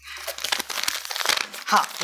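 Paper rustling and crinkling, banknotes and a paper bill being handled, for about a second and a half.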